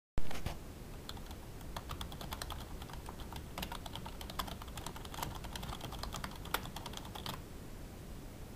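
Typing on a computer keyboard: a fast, irregular run of key clicks that starts about a second in and stops shortly before the end. A brief loud thump comes right at the start.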